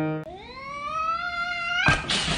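A cat's single long meow, rising steadily in pitch, broken off near the end by a sudden loud rush of hiss-like noise.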